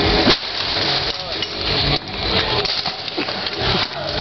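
A dome tent being beaten with a pole: a sharp knock, then irregular knocks and clattering of the tent's frame.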